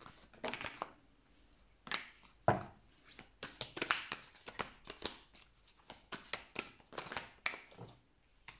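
A deck of tarot cards shuffled by hand: a run of quick, irregular papery swishes and taps, with a short lull about a second in.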